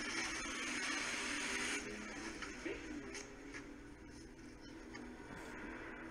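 Soundtrack of a TV drama playing at low level: a steady noise for about the first two seconds, then faint held tones of background score with a few scattered clicks.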